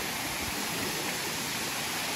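Steady rush of water from a rocky stream tumbling over boulders, with a waterfall just upstream.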